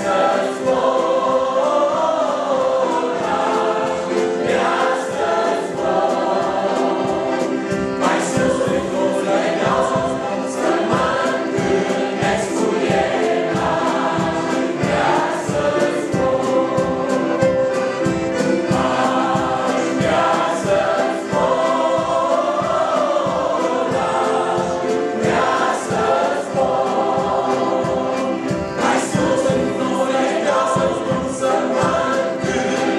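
Choir singing a Romanian Christian hymn together, many voices in sustained phrases, over accompaniment with a steady beat.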